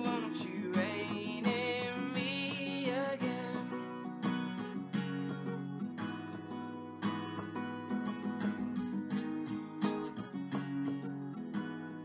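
Acoustic guitar strummed in steady chords. A man sings one long, wavering note over it during the first three seconds, then the guitar carries on alone.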